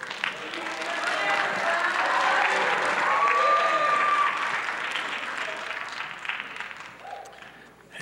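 Audience applauding, with a few voices calling out; it swells over the first few seconds and dies away near the end.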